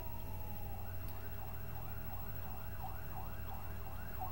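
A siren: a slow falling wail in the first second, then a rapid yelp sweeping up and down about three times a second, over a steady low hum.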